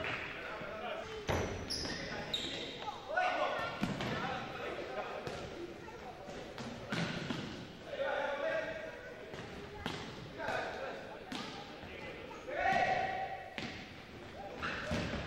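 Futsal ball being kicked and bouncing on a hardwood gym floor: repeated sharp knocks throughout. Several held, high calls from players or sneakers squeaking on the floor stand out about three seconds in, around eight seconds and near the end.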